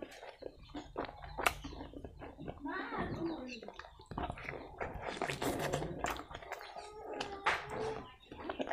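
Close-miked wet chewing and lip smacking of a hand-fed mouthful of fatty pork and rice, a dense run of sharp smacks and clicks that is busiest in the second half.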